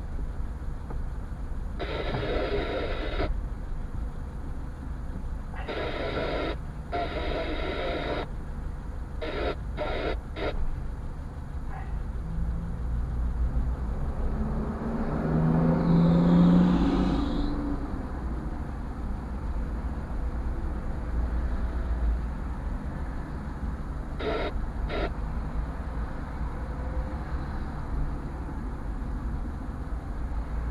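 Low, steady rumble of a car idling, heard inside the cabin while stopped in traffic, with a few short bursts of noise and one louder swell that builds and fades about halfway through.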